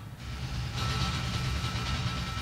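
Live drum-and-percussion improvisation: a dense, heavy low drum rumble with a high hissing wash of cymbals over it that swells back in under a second in, plus a thin steady high tone.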